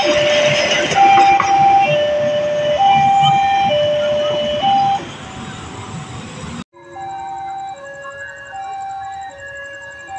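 Level crossing warning alarm sounding a two-tone electronic chime, alternating high and low about once a second, over the rumble and rattle of a passenger train passing. About two-thirds of the way through, the sound cuts off suddenly to a quieter recording in which a similar two-tone chime continues among other electronic tones.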